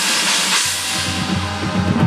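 Marching band and front ensemble playing: a bright, hissing wash fades by about a second in over held low notes, and short drum strokes come back near the end.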